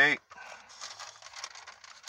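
Paper pages of a Bible rustling and crackling irregularly as they are turned to find a chapter.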